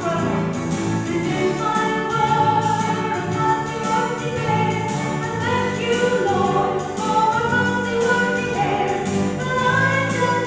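A choir singing a hymn over a steady, sustained low accompaniment, the voices moving from note to note every second or so.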